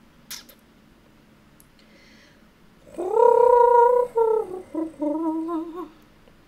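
A drawn-out wordless vocal call in two parts, starting about three seconds in: a held higher note for about a second, then a lower, wavering note. A sharp click comes near the start.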